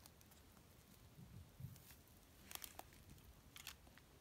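Near silence with a few faint clicks and scrapes, a cluster about two and a half seconds in and another near the end: a table knife spreading liver pâté from a tin onto a cracker.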